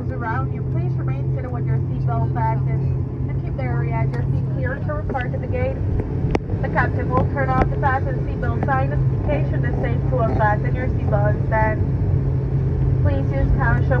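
ATR 72 turboprop engines and propellers heard from inside the cabin: a loud, steady low drone as the airliner rolls along the runway after landing.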